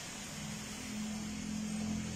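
A quiet, steady low mechanical hum that begins just after the start and grows slowly louder.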